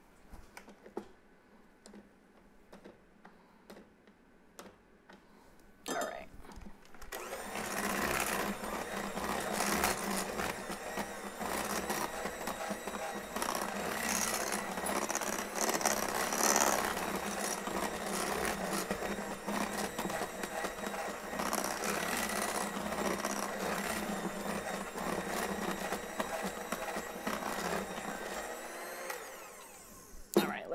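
Electric hand mixer beating a thin, cake-like chocolate batter in a glass bowl, switched on about six seconds in and running steadily until just before the end. Before it, faint scraping of a spatula around the bowl.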